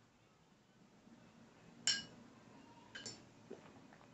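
Two short ringing clinks about a second apart, a paintbrush tapping against a hard glass or ceramic container, the first the louder, followed by a fainter tap.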